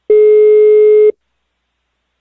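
Telephone ringback tone: one steady beep of about a second, the ringing heard on the calling line while the called phone rings before it is answered.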